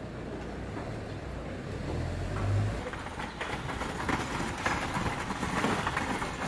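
City street traffic: a vehicle's low rumble builds and fades in the first half, then louder, denser traffic noise follows.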